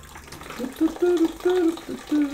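Soft drink poured from an aluminium can in a thin stream into a plastic bucket, splashing steadily. A man's voice hums a few wordless notes over it from about half a second in.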